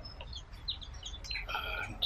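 Birds chirping in short, scattered high calls, with one louder call about one and a half seconds in.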